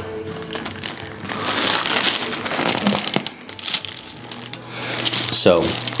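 Hands massaging the neck and rubbing against skin and hair close to a clip-on microphone, a noisy rustle mostly in the middle seconds, over soft background music.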